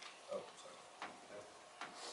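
Three faint, sharp clicks, roughly a second apart, in a quiet room, with a short spoken "oh" just after the first.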